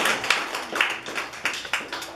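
Scattered applause from a small audience, irregular claps that thin out and fade towards the end.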